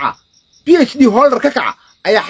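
A man's voice, loud and emphatic, for about a second in the middle, over a faint steady high-pitched chirping at about five chirps a second.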